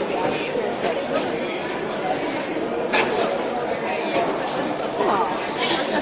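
Indistinct chatter of several people talking at once, over the steady background noise of a busy indoor public space.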